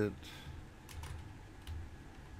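Typing on a computer keyboard: a run of faint, irregular keystrokes.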